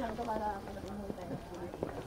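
People talking nearby, the voices fading after about a second, followed by a few irregular knocks of footsteps on the paved walkway.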